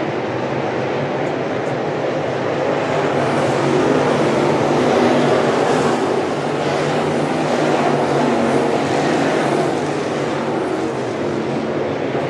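Several crate-engine dirt late model race cars running at speed around a dirt oval, heard as a steady, overlapping drone of V8 engines that swells a little louder about four and eight seconds in as cars pass.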